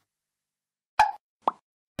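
A second of silence, then two short pops about half a second apart, the second slightly lower and more tone-like.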